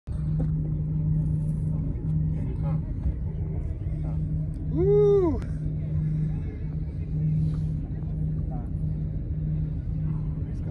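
A boat engine idling, a steady low hum over rumble, while the boat sits on the water during the fight with a fish. About halfway through comes one short pitched call that rises and then falls.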